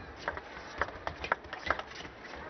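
Table tennis ball clicking off the rackets and the table in a fast rally, a string of sharp, irregularly spaced knocks, some coming in quick pairs.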